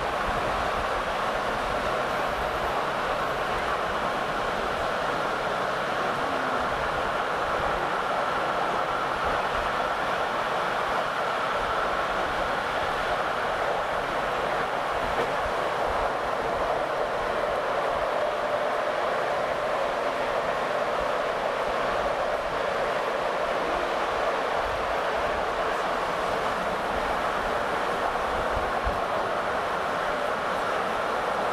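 Steady running noise of a moving passenger train, heard from inside the carriage.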